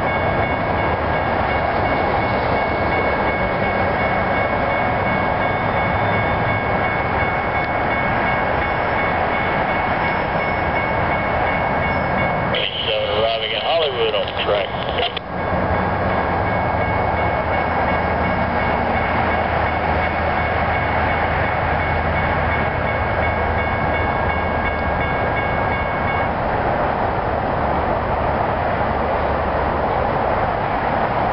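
Amtrak passenger train led by two P42DC diesel locomotives coming into the station: a loud, steady rumble with high, steady whining tones over it that stop shortly before the end. A different short sound breaks in about halfway.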